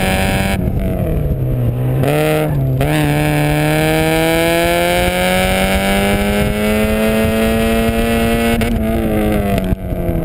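1994 Mazda Miata's 1.8-litre four-cylinder engine, breathing through a cone filter and a 2.25-inch cat-back exhaust, heard from the open cockpit while driven hard through an autocross course. The revs fall away about a second in as the throttle is lifted, pick back up, then climb steadily for several seconds before dropping off again near the end.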